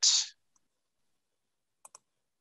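The hissing end of a spoken word, then dead silence broken near the end by two quick, faint clicks.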